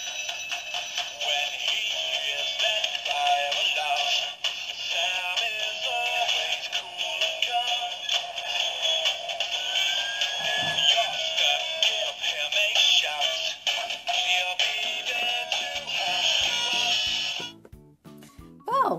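Fireman Sam Jupiter toy fire engine playing a sung electronic tune through its small built-in speaker, thin-sounding with no bass. The tune cuts off abruptly near the end.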